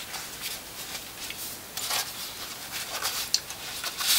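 Faint, soft rustling and scuffing of a fabric notebook case and notebook being handled, in a few brief patches.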